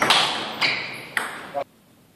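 A celluloid-type table tennis ball is hit back and forth in a fast rally. It makes three sharp, ringing knocks on bats and table about half a second apart, then the sound cuts off suddenly.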